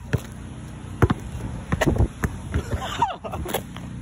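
Several sharp thumps at irregular intervals over a steady low hum, with a short voice sliding in pitch a little before three seconds in.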